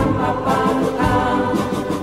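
Background choral music: a choir singing sustained notes over a steady beat of about two strokes a second.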